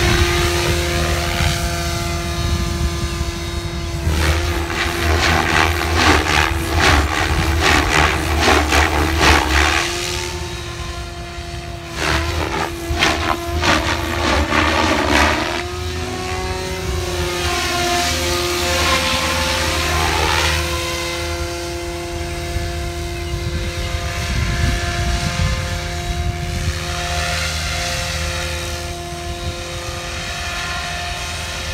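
Electric radio-controlled helicopter (Goblin 570 Sport, Xnova brushless motor on 6S) in flight. Its motor and drivetrain give a steady whine, and the rotor-blade noise swells loudly several times as it manoeuvres.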